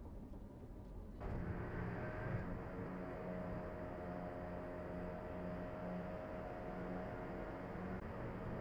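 Steady road and engine noise of a car driving at highway speed, heard from inside the cabin, with a constant low drone and a faint steady hum. It starts abruptly about a second in.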